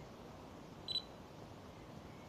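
A single short, high-pitched electronic beep about a second in, over a faint steady background hiss.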